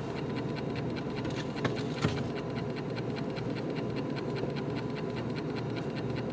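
Kitchen handling sounds as a refrigerator is opened and a cake on a plate is taken out: light clicks and rustling, with two sharper knocks about two seconds in, over a steady low hum.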